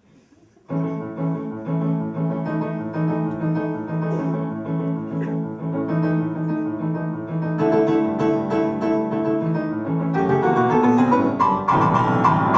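Piano starting a song's introduction less than a second in, playing a steady repeated pattern of notes and chords that grows fuller and louder toward the end.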